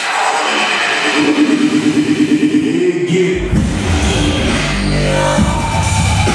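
Loud electronic dance music from a DJ set, played through a large sound system. A buildup with no bass gives way about halfway through to a drop where heavy bass comes in suddenly.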